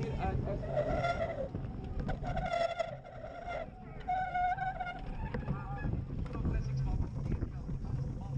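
Bicycle brakes squealing in three or four drawn-out, high tones as the cyclocross bikes slow hard for a turn, over steady rolling and wind noise.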